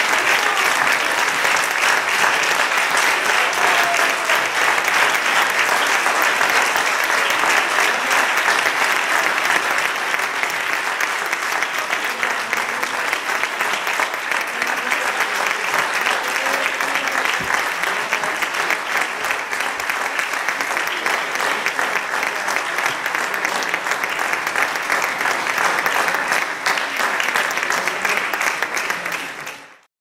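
Audience applauding: dense, steady clapping from a large crowd that fades out near the end.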